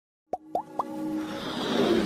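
Motion-graphics intro sound effects: three quick plops, each gliding upward in pitch, in the first second, then a swelling whoosh that builds up.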